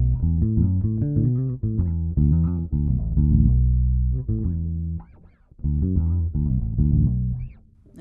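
Electric bass guitar playing a phrase of plucked notes. A quick run ends on a held note that rings and fades about halfway through. After a short break, a second run follows and stops just before the end.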